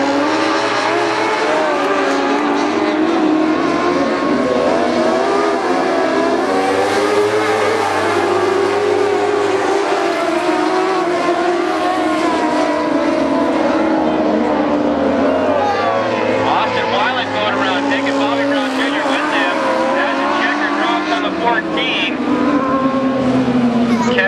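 Several dwarf cars' motorcycle engines racing together on a dirt oval. The engine notes keep rising and falling as the cars accelerate and lift around the track.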